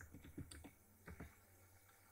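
Faint computer-keyboard keystrokes: a quick run of several taps in the first second, then a couple more a moment later, as a word is typed.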